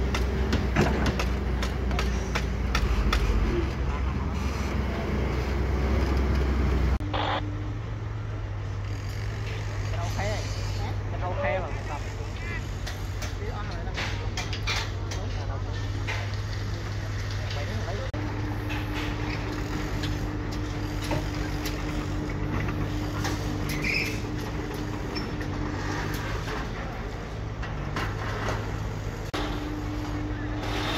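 A Caterpillar excavator's diesel engine running loud and low while it works its bucket over a dump truck, cutting off suddenly about seven seconds in. After that comes a quieter steady machine hum with scattered clicks and knocks of steel work.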